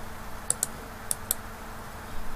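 Computer mouse clicking: two quick pairs of short, sharp clicks about half a second apart, as text is selected and the right-click menu is opened.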